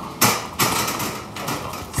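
Metal trolley laden with a heavy flat-pack box rolling and rattling over the floor, with two sharp knocks about a quarter and half a second in.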